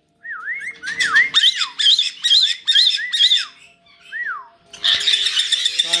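Pet caiques whistling a quick run of short, arching notes, about three a second, with a last single note after a brief pause. A loud, harsh squawking breaks out near the end.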